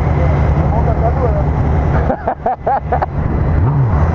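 Motorcycle engine running at a steady cruise. The engine note drops away about halfway through and comes back near the end.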